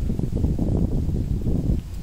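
Wind buffeting the phone's microphone: a loud, low rumble that eases slightly near the end.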